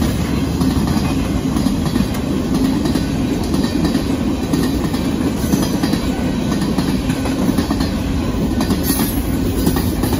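Freight train cars rolling past close by: a loud, steady rumble of steel wheels on rail, with clacking as the wheels cross rail joints.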